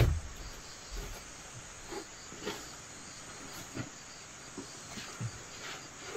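Bare feet knocking on a wooden plank floor as a person walks across it and sits down, with the loudest thump right at the start and a few softer knocks after. Underneath, insects chirr steadily.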